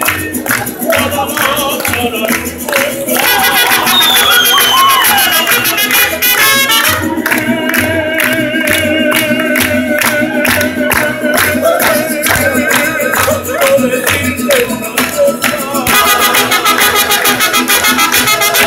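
Live mariachi band playing, with violins, guitars and trumpets, and a voice singing. People clap along to the beat.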